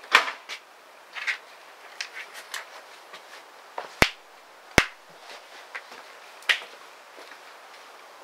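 Handling noises as a ceramic plant pot is picked up and carried through a wooden doorway: scattered light knocks, scrapes and rustles, with two sharp clicks a little under a second apart about halfway through.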